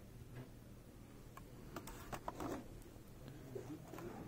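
Light clicks and taps of a boxed model car being handled, in a quick cluster about two seconds in, over a low steady hum.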